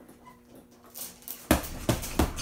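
Boxing-glove punches landing on a hanging heavy bag with a slap and thud: two hard hits, one about a second and a half in and another just before the end, after a lighter knock.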